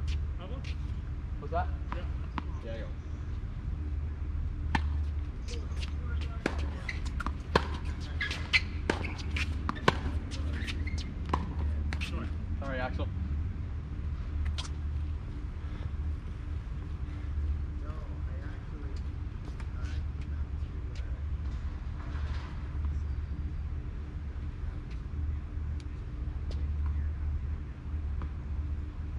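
Tennis ball being struck by rackets and bouncing on a hard court during a rally: sharp pops at irregular intervals, thickest through the middle and thinning out later, over a steady low rumble.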